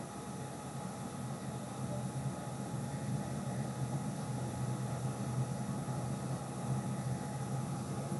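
Steady hiss with a low hum, the background noise of a running computer's cooling fan, growing slightly louder about three seconds in.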